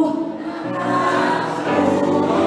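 Audience singing the 'aha, uu' call-and-response line together in chorus over backing music.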